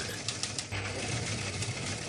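A steady low hum with a faint hiss over it, no clear event.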